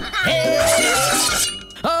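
Cartoon soundtrack: music with a shattering, breaking sound effect early on, then a short lull and a voice starting near the end.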